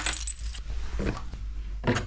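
A bunch of keys jangling as they are picked up off a table, followed by a couple of soft knocks of objects being handled.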